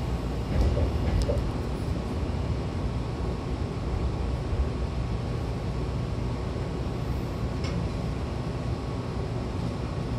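Hankyu Kobe Line train heard from inside the car beside the doors as it rolls in along the terminal platform: a steady low running rumble with a faint steady hum and a few light clicks.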